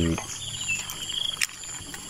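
A voice cuts off just after the start, leaving a background of calling animals: a high, rapidly pulsing trill with a thin steady whine above it. A single sharp click comes about one and a half seconds in.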